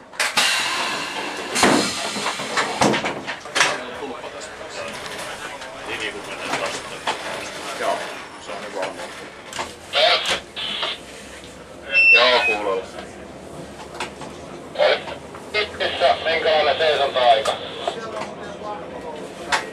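Cab of a VR Dm7 diesel railcar rolling slowly along the track: irregular clunks and rattles, with indistinct voices talking. A short high beep sounds about twelve seconds in.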